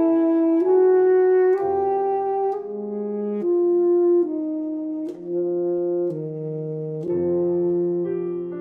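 Tenor saxophone and Yamaha grand piano playing classical chamber music: the saxophone carries a melody of held notes that change pitch about once a second, over piano chords.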